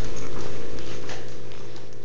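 Blanket fabric rustling and phone handling noise over the steady hum of a steam vaporizer.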